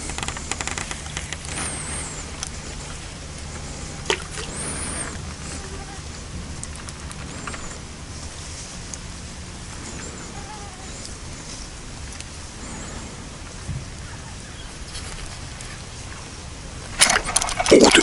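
Quiet pond-side ambience with a steady low mechanical hum and a few faint high chirps. About a second before the end comes a sudden loud splashing as a big carp thrashes at the surface.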